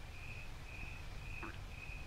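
A cricket chirping at one steady pitch, about two even chirps a second, faint under low room noise.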